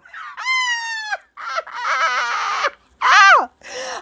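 A woman's voice: a long high-pitched squeal falling slightly in pitch, then a burst of breathy laughter, then a short high exclamation that drops in pitch near the end.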